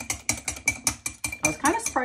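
Mini whisk beating a single egg white in a glass bowl to a foam: a quick, even clicking and rattling of about six strokes a second.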